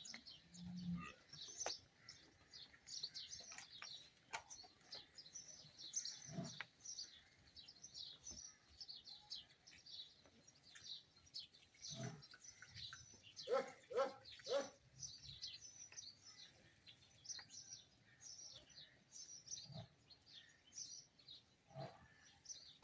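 Many small birds chirping continuously in quick short notes, with a few scattered knocks and a brief run of three lower calls about two-thirds of the way through.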